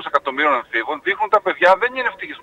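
Speech only: a man talking continuously, his voice narrow and phone-like.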